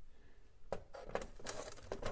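Screwdriver working a quarter-turn (90-degree) fastener on a car's underbody panel: a few faint clicks and scrapes as the fastener is turned and pulled out.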